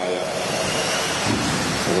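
Several 1/10-scale 2WD electric off-road RC buggies racing on an indoor track: a steady rushing noise of motors and tyres, with a faint whine rising and falling as the cars speed up and slow.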